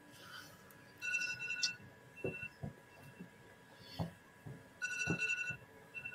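Faint high-pitched electronic tones at one steady pitch, in several short spurts of beeping, with a few soft clicks between them.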